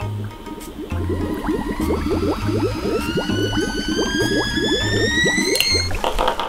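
Water bubbling in a kettle coming to the boil, with the kettle's whistle starting about a second in and rising steadily in pitch. Background music with a pulsing bass plays underneath.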